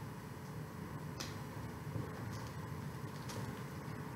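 Scissors snipping carefully at the plastic wrapping on a leather boot: a few faint clicks, the clearest a little over a second in, over a low steady room hum.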